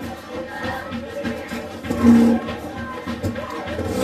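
Music, several notes sounding together, with a louder held note about two seconds in.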